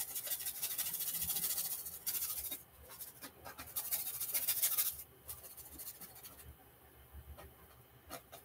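Paintbrush bristles scrubbing and dabbing acrylic paint onto a stretched canvas, a rapid scratchy stroking in several bursts that fade after about five seconds.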